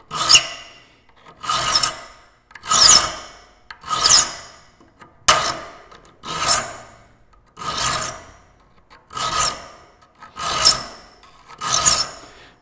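Saw file rasping across the steel teeth of a hand saw in a vise: about ten even push strokes, a little over a second apart. The teeth are being shaped at about three strokes per tooth.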